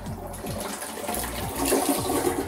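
Toilet flushing: water rushes and swirls around the bowl and drains away, rinsing the cleaner out of the freshly scrubbed bowl.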